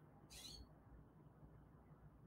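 Near silence: faint room tone with a low hum, and one brief faint hiss about half a second in.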